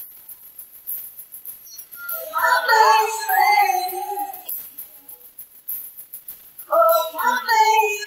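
Isolated pop vocal track with no instruments: a male voice sings two drawn-out wordless phrases whose pitch bends and slides, the first starting about two seconds in and the second near the end.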